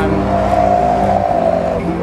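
A road vehicle passing by, its sound swelling and then fading over about a second in the middle.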